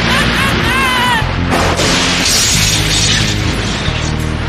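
Cartoon lightning-strike sound effect: a warbling tone in the first second, then a long crackling crash from about a second and a half in, over background music that carries steady low notes.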